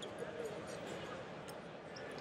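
Background noise of a large arena hall: indistinct crowd chatter and distant voices, with a few faint knocks and thuds scattered through it.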